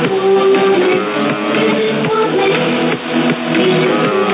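Recorded music received off the air on 4625 kHz, the UVB-76 'buzzer' frequency, through a shortwave receiver in upper sideband. The sound is thin and cut off above about 4 kHz.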